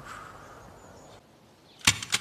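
Faint room tone, then shortly before the end one short sharp puff of breath: the start of a man's brief laugh.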